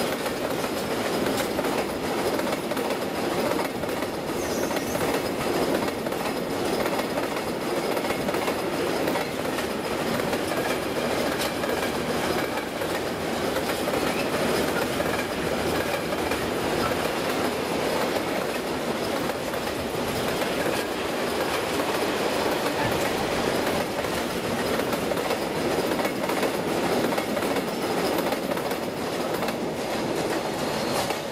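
Freight train of railway tank wagons rolling past, a steady rumble of steel wheels on rail with clickety-clack over the rail joints.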